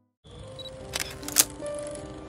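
A moment of silence, then a title-card transition sting: a static-like hiss with a few held music notes, and two sharp clicks about a second in, the second louder.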